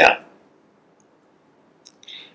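A man's spoken word ends, then quiet room tone with a single faint, short click near the end.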